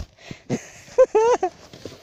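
A child's short, high-pitched wordless cry about a second in, over the faint scraping rustle of a plastic sled sliding on snow.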